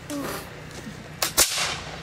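Two black-powder musket shots fired in quick succession a little over a second in, the second louder, with a short echo trailing after it.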